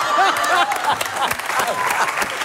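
Studio audience applauding, with dense clapping from about half a second in and voices calling out over the first moment.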